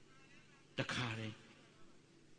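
A pause in a man's speech: a single short spoken syllable about a second in, otherwise low room tone.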